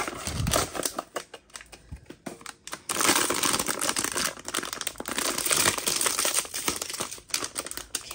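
A sealed foil blind-box bag crinkling loudly as it is handled, starting about three seconds in. Before that come quieter clicks and rustles of the cardboard box it came out of.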